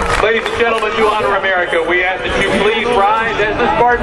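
People talking, several voices overlapping.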